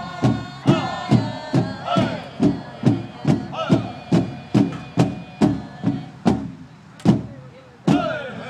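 Powwow drum group: a large hand drum struck in a steady beat about twice a second, with the singers' chorus over it. The singing fades out about halfway through, leaving the drum alone; the drum ends on a hard accented stroke and a short pause.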